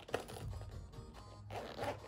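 Zip of a small holographic pouch being worked by hand: a sharp click just after the start, then a short rasp of the zip near the end.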